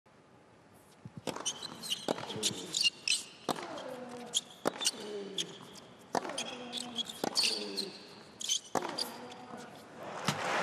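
Tennis rally on an indoor hard court: racket strikes on the ball and ball bounces about once a second, with short pitched player grunts on the shots and high shoe squeaks on the court.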